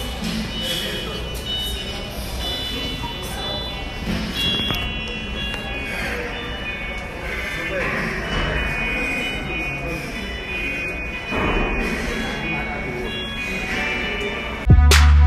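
Gym room sound picked up by a phone microphone: music playing over the gym's speakers, mixed with indistinct voices.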